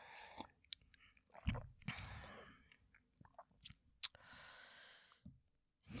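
Faint sipping and swallowing from a mug, with soft breaths and a single sharp click about four seconds in.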